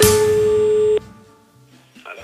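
The end of a sung radio jingle: a crash with a single steady telephone-like tone held for about a second, cut off abruptly with a click, after which the sound falls to a faint hum.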